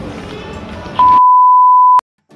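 Background outdoor noise, then about a second in a loud, steady single-pitch electronic beep that lasts about a second and cuts off suddenly.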